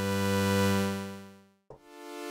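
Sylenth1 software synthesizer playing a sustained note that swells up and then dies away slowly, fading out completely about a second and a half in; a higher note then swells in slowly near the end. The slow swell and slow fade come from a long attack and long release on the amp envelope, the basic make-up of a pad sound.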